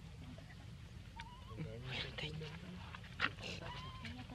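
Faint, short wavering squeaks of a baby monkey, once about a second in and again near the end, over low background voices and a few small clicks.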